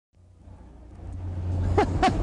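A low, steady rumble fades in and grows louder, with a brief high cry from a voice near the end.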